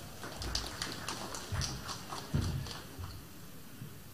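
Scattered, thin applause: irregular single hand claps that die away about three seconds in, with a few dull low thumps among them.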